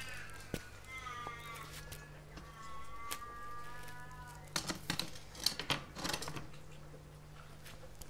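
Two drawn-out, wavering animal calls, each a second or two long and sliding slightly down in pitch. These are followed about halfway through by a cluster of knocks and clatter as a small solar panel is propped against a metal fence railing.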